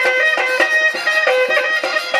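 Live Bihu folk music: a dhol drum beating a fast rhythm under a quick melody of short held notes that step up and down in pitch.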